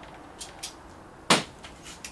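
Two faint light clicks, then one sharp knock just over a second in, over a quiet room background.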